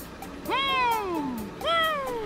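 A cartoon helicopter character's wordless, sing-song voice answering a question: a long gliding call that rises briefly then falls, starting about half a second in, and a shorter one near the end, over background music.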